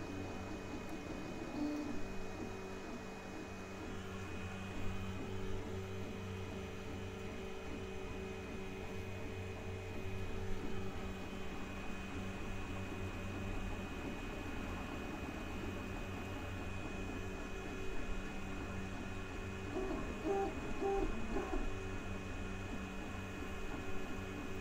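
Geeetech Giantarm D200 3D printer printing normally after recovering from a filament run-out: a steady hum of its fans and stepper motors with a few faint tones, and a short run of higher stepper-motor tones about twenty seconds in as the print head moves.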